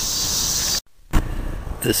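A steady high chorus of crickets that cuts off abruptly a little under halfway through; after a short near-silent gap comes a single knock, and a man's voice starts near the end.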